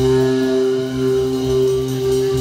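A live band's amplified instruments holding a sustained chord: steady ringing notes with no beat, the rhythm section having dropped out.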